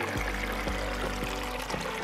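Water trickling and splashing over rocks in a shallow garden stream, an even rushing hiss, under soft background music with long held notes.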